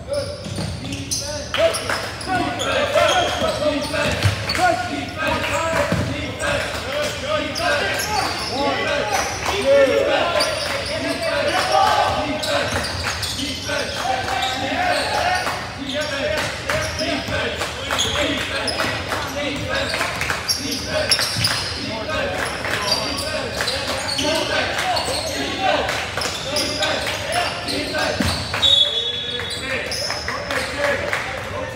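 Basketball game in a gymnasium: a ball bouncing on the hardwood court amid many people's voices, echoing in the large hall. A short, high whistle sounds near the end, a referee's whistle stopping play.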